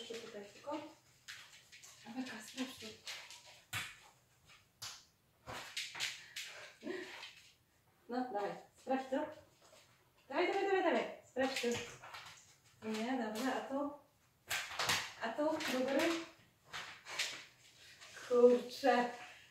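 A woman talking quietly to a dog in short phrases, with short sharp clicks and sniffs from the dog searching along the wall between them.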